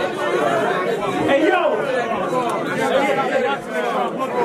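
Crowd of men talking and calling out over one another, a steady overlapping chatter of voices in a room, with no single voice standing clear.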